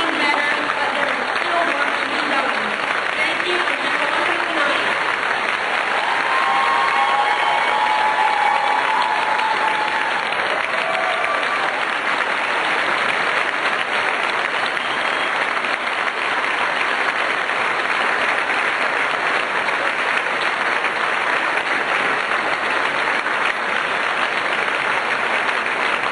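A large audience giving a standing ovation: dense, steady applause that keeps going without a break.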